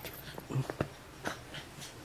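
A pet dog making a few faint, short sounds: scattered soft clicks.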